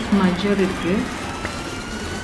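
A woman talking, then a brief pause in her speech about a second in.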